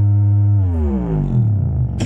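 Bass-heavy music with the drums dropped out: one deep bass note with many overtones, held for about half a second and then sliding smoothly down in pitch over about a second.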